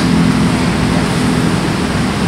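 Steady rushing background noise with a faint low hum underneath.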